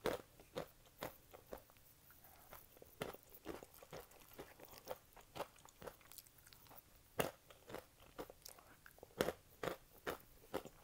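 Close-miked crunching and chewing of Takis Fuego crunchy coated peanuts (chili pepper and lime). Sharp, irregular crunches come several times a second, with the loudest bites about seven and nine seconds in.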